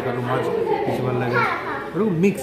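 Only speech: people talking at a table.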